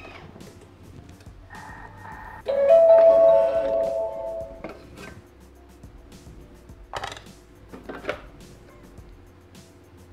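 Thermomix TM6 kitchen machine sounding its electronic chime, a couple of notes with the last one held for about two seconds, signalling the end of a timed cooking step. A few light clicks and knocks from the machine's lid and bowl follow.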